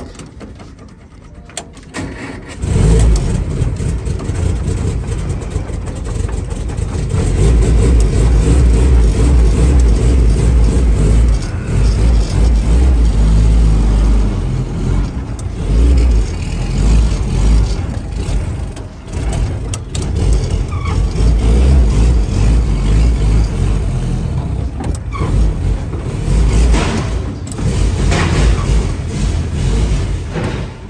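A WWII military jeep's engine starts about two and a half seconds in. It then runs with its revs rising and falling as the jeep is driven.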